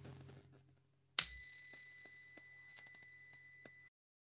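A small bell struck once, about a second in, giving a clear, high ring that fades over a few seconds and then cuts off abruptly. It marks the start of a pause for silent sitting meditation.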